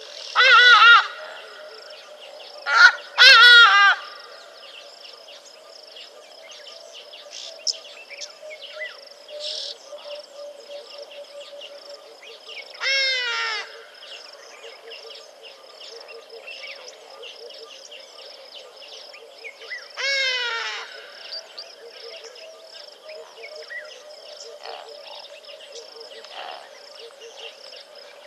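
A bird calling loudly in short bursts of rapid, harsh, repeated notes: twice within the first four seconds, then again about 13 and 20 seconds in. Under the calls runs a steady chorus of insects.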